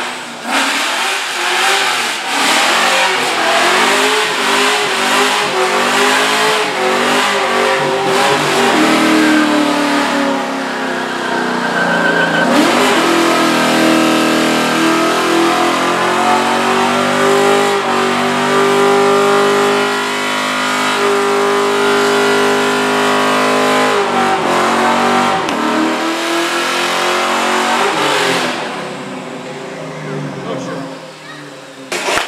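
Ford Mustang doing a burnout: the engine is revved hard while the rear tyres spin and smoke. The revs bounce up and down at first, then, after a brief dip, are held high and steady for about ten seconds before easing off near the end.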